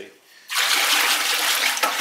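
Liquid glaze being stirred briskly with a whisk in a plastic bucket: a steady sloshing that starts suddenly about half a second in. The glaze has settled, leaving water on top, and the stirring brings the heavy particles back up from the bottom.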